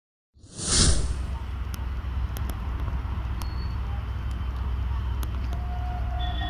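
Diesel locomotive engine idling with a steady low rumble. A brief burst of noise comes as the sound cuts in about half a second in, and faint clicks and short thin tones sit over the rumble.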